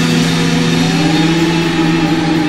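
Rock band playing live: held, droning electric guitar and bass notes, one bending slowly upward in pitch about a second in, with few drum hits.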